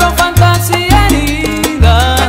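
Salsa music with a strong, heavy bass line under pitched instrument lines and sharp percussion strokes.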